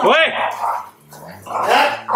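A dog gives one short, high bark that rises and falls, during rough play between two dogs, with growling.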